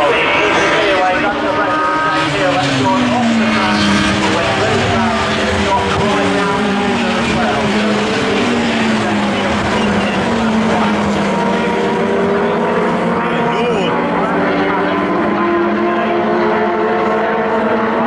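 Super Touring race car engines running hard, several at once, their notes rising and falling as the cars accelerate, shift and brake around the circuit.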